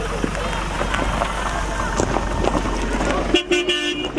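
Car horn sounding once near the end, a single steady tone about half a second long, over people's voices and chatter.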